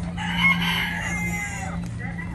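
A caged rooster crowing once, one call of about a second and a half, over a steady low hum.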